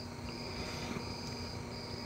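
Insect trilling: a thin high steady note that breaks off briefly about every three-quarters of a second, over a faint low steady hum.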